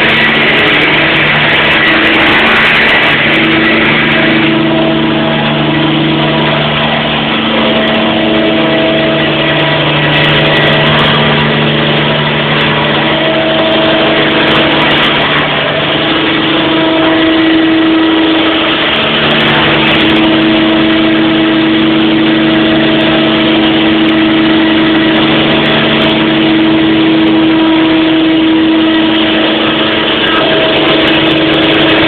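Electric Align T-REX 700 RC helicopter flying, its brushless motor and rotor blades giving a loud, steady whine and hum. Several tones fade in and out and shift slightly in pitch.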